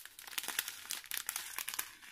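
Clear plastic zip bags of diamond-painting drills crinkling as they are handled, a steady run of small crackles and clicks.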